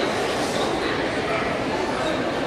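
Steady murmur of many people talking at once around a sports hall.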